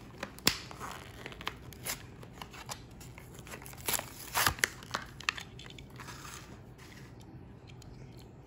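Hot Wheels blister pack, a plastic bubble on a cardboard card, being torn open by hand: scattered crackles and snaps of plastic and card. The loudest cluster comes about four and a half seconds in.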